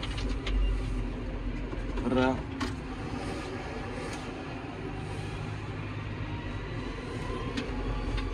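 John Deere 6155M tractor's six-cylinder diesel engine running steadily under way, heard from inside the cab as a low rumble.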